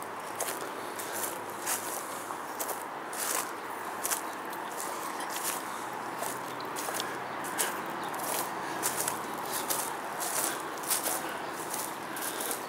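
Footsteps on ground littered with dry leaves, a steady walking pace of about two to three short crunching steps a second, over a steady background hiss.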